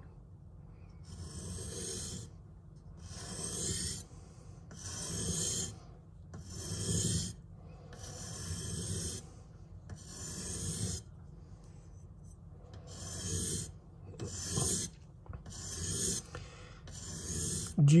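Steel knife blade drawn stroke by stroke across the rounded-off edge of a wet soaking whetstone, about ten gritty rasping strokes one every one to two seconds: the recurve part of the edge being ground until it raises a burr.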